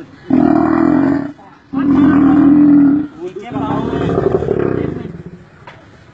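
An African lion growling three times, each growl long, deep and loud, as it is held down by men.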